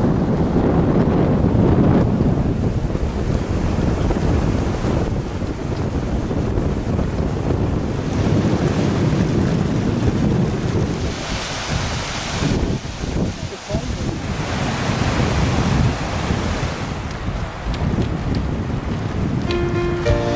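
Wind buffeting the camera microphone in gusts, heavy in the low end. For several seconds around the middle a brighter rushing hiss of glacial meltwater comes in.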